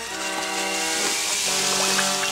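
Film score holding sustained chords over a steady, wet, hissing liquid sound effect.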